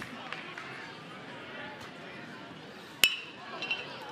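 Metal baseball bat striking the ball on a swing: a single sharp ping with a short metallic ring about three seconds in, over low stadium background noise.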